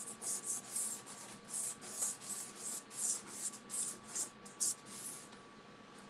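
Soft pastel stick scratching across sanded pastel paper in quick back-and-forth strokes, about three a second, laying in colour; the strokes stop about five seconds in.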